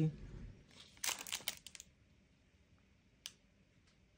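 Short crinkly rustle as a craft stamp and its plastic are handled, about a second in, followed near the end by a single faint click.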